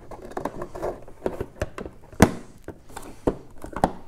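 Hard plastic parts being handled and pressed together: the auxiliary LED light housing fitted into its slot in a snowmobile's hood panel, with scattered clicks and taps and one sharp knock about two seconds in.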